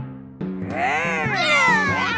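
Several young cartoon voices play-roar as dinosaurs in long, overlapping rising-and-falling calls, starting about half a second in, over background music with sustained low notes.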